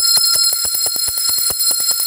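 Metal hand bell with a wooden handle rung rapidly by hand, its clapper striking about ten times a second over a steady, high ringing.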